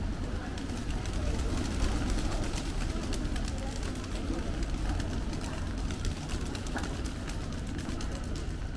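Wet city street ambience with a flock of feral pigeons cooing close by, among many light ticks and taps, over passers-by's voices and a steady low rumble of the city.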